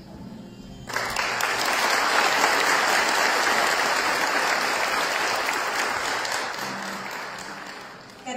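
Audience applauding, starting suddenly about a second in and slowly dying away toward the end.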